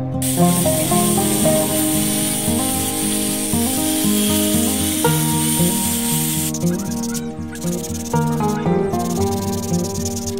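Rotary sanding disc hissing steadily against a small piece of teak wood, over background music. About six and a half seconds in, the steady hiss breaks up into short scratchy strokes.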